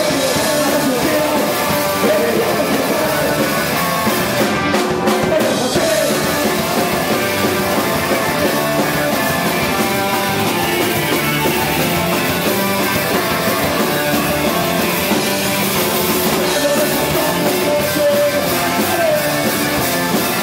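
Garage rock band playing live on electric guitars and drum kit, loud and continuous.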